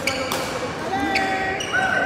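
Badminton rally in an echoing sports hall: two sharp racket strikes on the shuttlecock about a second apart, with players' shoes squeaking on the court floor in the second half.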